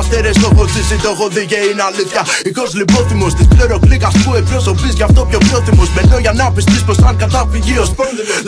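Hip-hop track: rapping over a beat with deep bass and kick drums. The bass and kick drop out for about two seconds, a second in, then come back.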